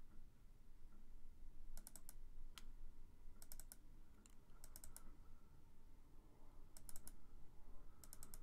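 Faint computer mouse double-clicks, coming in quick clusters about five times, as folders are opened one after another in a file dialog.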